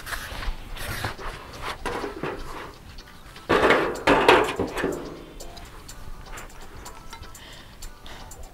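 Rustling and light clicks of a plastic needlepoint mesh sheet and a canning jar lid being handled, with a louder rustle about three and a half seconds in, over background music.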